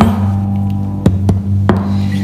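Acoustic guitar with a chord ringing on, and a few sharp percussive strokes on the strings about a second in and again shortly after.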